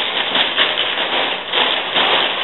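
Loud, continuous rustling and crinkling of a shopping bag as a pair of jeans is pulled out of it.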